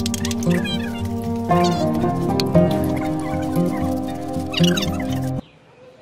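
Background music that cuts off suddenly about five and a half seconds in.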